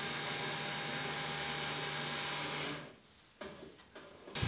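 A steady electric machine hum with a low held tone. It fades away about three seconds in, leaving near silence.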